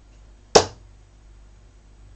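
A 24 g steel-tip dart striking the dartboard once, a single sharp thud about half a second in that dies away quickly.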